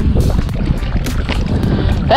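Wind buffeting the microphone: a loud, uneven low rumble, with background music faintly underneath.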